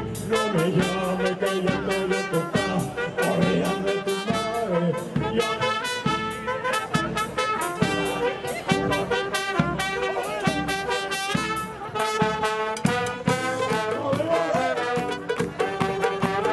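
A xaranga brass street band playing an upbeat tune: trumpets, trombones, saxophones and a sousaphone over a steady beat.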